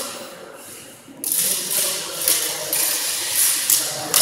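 Cut-and-thrust swords clashing in a fencing exchange: a sudden run of metallic clatter and clicks starting about a second in, with several sharper strikes.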